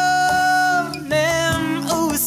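Male voice singing over acoustic guitar accompaniment. He holds one long note for about the first second, then starts a new phrase.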